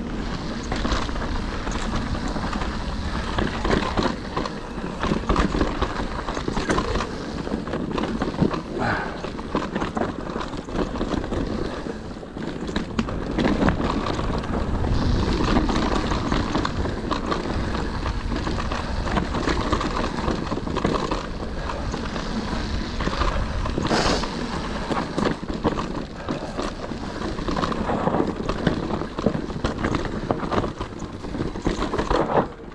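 Cube Stereo Hybrid 140 electric mountain bike ridden fast over a rough dirt and stony trail: a continuous clatter of tyres on loose stones and ground, with frequent irregular knocks and rattles from the bike.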